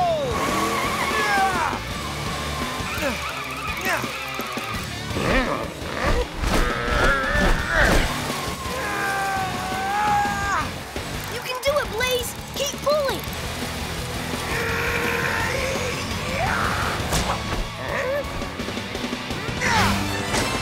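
Animated-cartoon soundtrack: background music with monster-truck driving and skidding sound effects, and characters' wordless shouts and exclamations.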